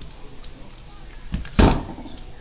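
A single dull thump, with a lighter knock just before it, about one and a half seconds in, from the transformer unit being handled and shifted.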